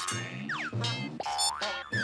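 Stock cartoon sound effects with background music: springy boings, a quick falling pitch glide about half a second in, and rising glides near the end, cued to an animated ticket vendor stamping and flinging out a stream of tickets.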